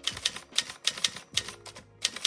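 Typewriter keystroke sound effect: a quick, uneven run of sharp key clacks, about four a second, with faint background music underneath.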